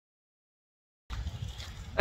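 Silence for about the first second, then wind buffeting the microphone as a steady low rumble.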